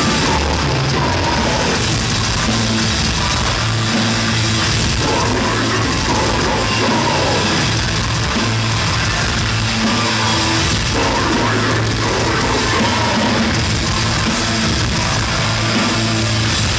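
Heavy metal band playing live, with distorted electric guitar and a drum kit at a steady, unbroken loudness.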